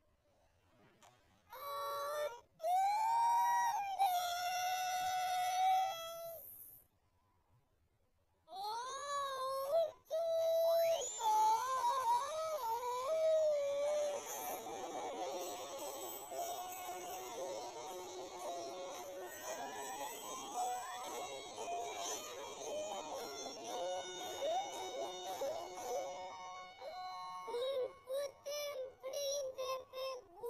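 Cartoon audio run through heavy effects: warbling, pitch-bent voices and tones that slide up and down, broken by two short silences. About halfway through it turns into a denser, music-like wash of sound.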